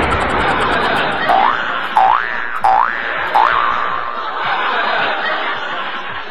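Cartoon 'boing' sound effects: four springy notes, each rising in pitch, about 0.7 s apart, over a cartoon laughing and snickering sound effect.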